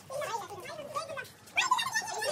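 Children's voices, chattering and calling out over one another, loudest in a burst of high-pitched shouting near the end.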